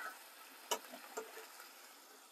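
Metal kitchen tongs clicking as they handle a raw chicken breast over a hot frying pan: two short sharp clicks about half a second apart, over a faint sizzle from the pan.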